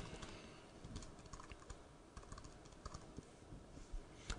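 Faint, irregular key taps on a computer keyboard as code is typed.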